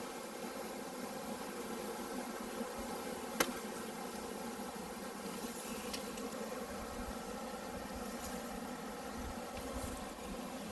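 Honeybee swarm buzzing steadily at close range, a dense, even hum of thousands of bees. A single sharp click about a third of the way in.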